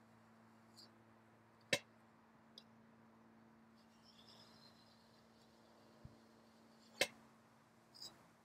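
Faint steady hum of an electric potter's wheel motor, dying away about two-thirds of the way through. Two sharp clicks stand out, one a little under two seconds in and one about a second before the end, with a few lighter ticks between.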